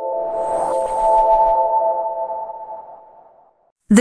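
Logo intro sting: a held chord of steady electronic tones with an airy whoosh swelling over it in the first second or so, the whole sound fading away about three and a half seconds in.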